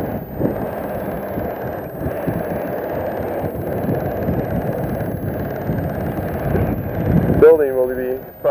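Wind buffeting an outdoor microphone: a steady, rumbling noise with irregular gusty flutter.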